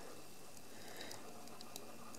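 Faint, soft wet sound of a thick beaten egg and parmesan mixture being poured onto hot fettuccine in a stainless steel pot, with a few faint ticks.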